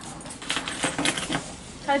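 Pieces of ice clicking and crunching in an uneven run of small, sharp clicks, as a thin frozen shell of ice is handled and broken.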